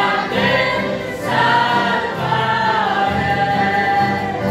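A family choir of men, women and children singing a Romanian Christian hymn together in long held notes, accompanied by piano accordions and an acoustic guitar.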